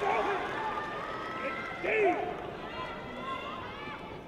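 Shouted voices echoing in an arena over a background of crowd voices, with one loud shout about two seconds in.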